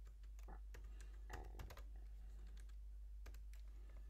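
Faint typing on a computer keyboard: a few scattered keystrokes, typing out a short line of code.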